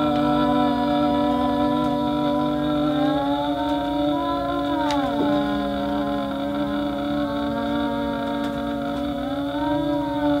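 Several people holding a long sung 'ahhh' at once, trying to outlast each other, their steady pitches overlapping. One voice stops about three seconds in, and another wavers and slides down in pitch around five seconds in.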